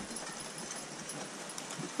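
Faint hoofbeats of a team of two Percheron draft horses walking on a dirt woodland trail, over a steady low hiss.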